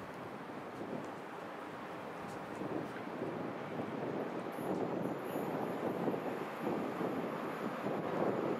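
Wind noise on the microphone over a low rumble that builds steadily louder: a train not yet in sight approaching the station on the main line, not stopping.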